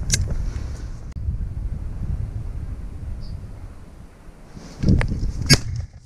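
Low rumble of wind and handling noise on the microphone as a shotgun is moved and raised inside a net hide. There is a sharp click near the start, then a short scuffle and a louder sharp knock about five and a half seconds in.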